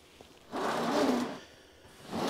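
A large cardboard model-kit box sliding and scraping across a cutting mat as it is turned round. It is one rasping scrape lasting about a second, starting about half a second in.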